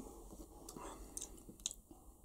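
Quiet room tone with a few faint, brief clicks, about a second in and again near the end.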